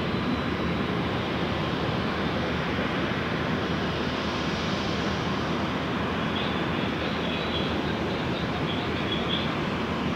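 Jet engines of an Airbus A320 rolling along the runway: a steady, even roar. A few faint high chirps sound in the second half.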